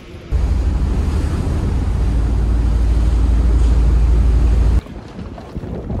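Strong wind buffeting the microphone: a loud, low rumble that starts suddenly just after the start and cuts off abruptly near five seconds, followed by quieter outdoor background noise.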